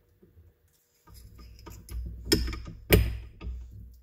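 A steel transmission gear being slid back onto the main axle shaft inside the gearbox case: handling noise with two sharp metal clicks, the louder one just under three seconds in.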